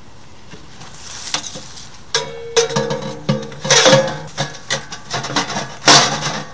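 Metal clanking and knocking, like the parts of a small sheet-metal tent wood stove being handled. A quiet start gives way about two seconds in to a run of sharp knocks, some with brief ringing.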